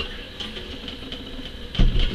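Quiet room tone, then a single dull thump near the end as a metal model rollback bed is set down upright on a wooden table.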